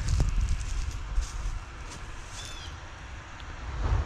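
Wind buffeting the microphone: a low rumble that eases after about a second and a half and swells again near the end, with faint scattered ticks and rustles.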